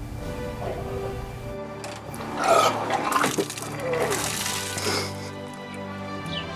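A man retching and vomiting, with liquid splattering, loudest between about two and five seconds in, over background music.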